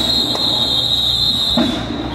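A whistle blown in one long, steady, high-pitched blast that stops just before the end, with two short drum-like knocks underneath.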